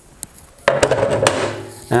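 A metal-railed fence section being set down on a table saw's top: a small click, then after half a second about a second of knocking and scraping with a faint metallic ring as it is slid into place.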